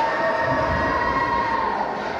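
A horn sounding in one long, steady blast of several tones together, dropping off near the end.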